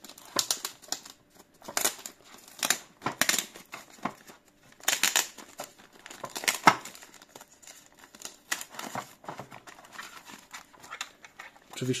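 Thin plastic protective bag crinkling and rustling in irregular crackles as it is slid and pulled off a router.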